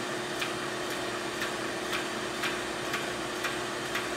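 Neptune 500 series hydraulic diaphragm metering pump running, its electric motor giving a steady hum while the pump ticks evenly about twice a second. The stroke is being raised from zero toward 30%.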